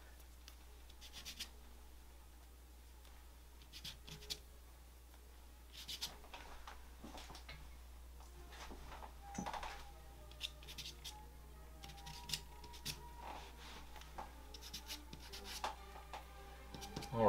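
Stick of charcoal scraping across gesso-textured drawing paper in short, quick, scratchy strokes at an irregular pace, over a low steady hum.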